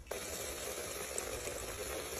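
Thin slices of plantain deep-frying in hot oil in an aluminium pot, the oil sizzling and bubbling steadily: the oil is hot enough for the chips to turn crisp.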